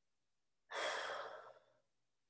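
A woman breathing out audibly through the mouth under exertion: one breath about a second long, starting partway in and fading away.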